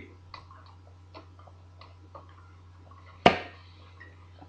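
A few faint, irregular clicks over a low steady hum, then one loud sharp knock about three seconds in.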